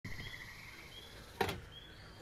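Faint outdoor ambience with a bird giving a short rising chirp three times, about once every eight-tenths of a second, over a faint pulsing high trill early on. A sharp handling knock about a second and a half in is the loudest sound.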